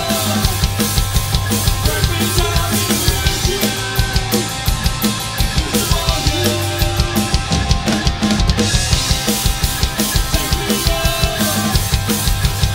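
Live rock band playing loudly: electric guitars and bass over a drum kit keeping a steady, driving beat of bass drum and snare.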